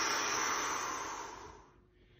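A man's long breath blown out through pursed lips, a steady hiss that fades out towards the end: the full exhale of a rib-positioning breathing drill.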